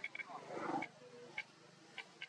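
A brief voice-like call about half a second in, over short faint chirps that repeat a few times a second.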